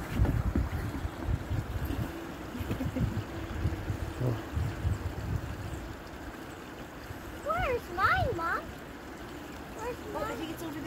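A shallow forest stream flowing under a footbridge, with low rumbling and knocking through the first half. Young children's high voices exclaim briefly about three-quarters of the way through.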